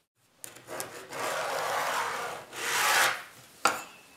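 Rubbing and scraping strokes on an MDF board while it is marked out with a pen and steel rule: three strokes, the middle one about a second and a half long, then a short tap near the end.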